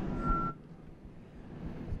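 Airliner cabin noise with a short, steady high-pitched beep at the start. Half a second in, the noise drops suddenly to a quieter hiss that builds slightly again.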